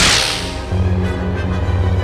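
A lightsaber swing sound effect: one sharp swoosh falling in pitch at the start, over soundtrack music that takes on a heavier bass line about three-quarters of a second in.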